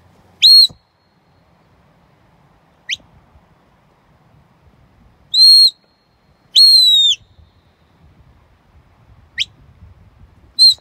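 Sheepdog handler's whistle commands to a working dog: five separate high whistles, a short rising note at the start, a brief upward chirp about three seconds in, a steady note in the middle, a longer slightly falling note just after, and another quick upward chirp near the end.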